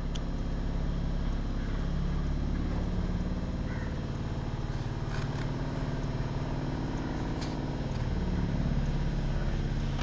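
A motor running steadily with a low hum, its pitch drifting slightly a couple of times.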